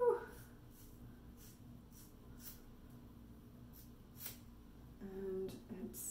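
Hair-cutting scissors snipping through the wet ends of a thick ponytail: a run of faint, irregular snips about half a second apart.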